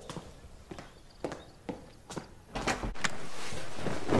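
Footsteps on a hard floor, about two a second. About three seconds in they give way to a louder, steady background.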